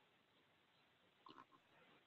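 Near silence: faint line hiss on a video call, with a couple of barely audible brief sounds about a second and a half in.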